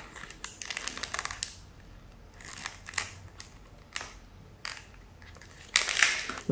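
Wrapper of a solid shampoo bar crinkling and clicking as it is handled and turned over in the hands, in scattered short crackles.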